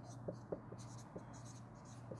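Dry-erase marker writing on a whiteboard: faint squeaks and small taps of the tip as letters are written, over a steady low hum.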